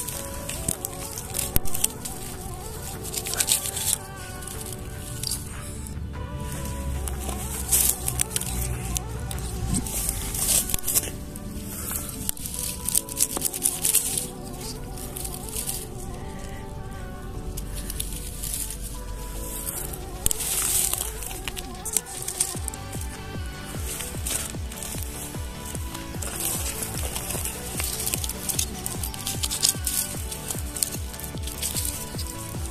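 Background music with steady held tones, over repeated short rustles and scrapes: hands and a mushroom knife working through dry grass as thistle oyster mushrooms are cut and brushed clean.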